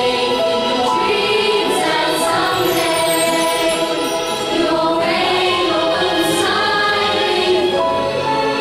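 A choir singing with musical accompaniment, held notes changing every second or so, at a steady level.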